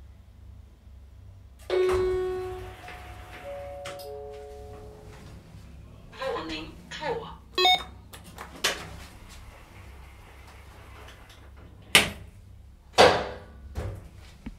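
Telescoping hydraulic elevator's chime: one loud ringing ding about two seconds in, then a few softer notes at other pitches, over a steady low hum. A brief voice follows midway, and two sharp knocks come near the end.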